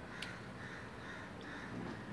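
Faint bird calls, about four short calls in a row, over quiet room tone, with a light click about a quarter second in.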